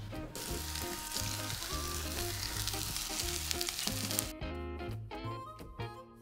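Sliced shiitake and button mushrooms sizzling as they hit a very hot pan with a little olive oil. The sizzle stops suddenly about four seconds in, leaving only background music.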